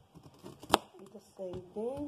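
Kitchen knife cutting the peel off a piece of cassava on a cutting board: light scraping and clicks, with one sharp knock of the blade on the board about a third of the way in. A short voice sound comes near the end.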